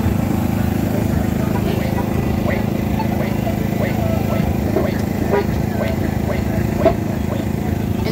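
Steady low engine drone of street traffic with a fast, even pulse, and faint scattered voices in the background.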